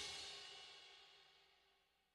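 The fading ring of a rock song's last cymbal crash, dying away in the first half-second, then near silence.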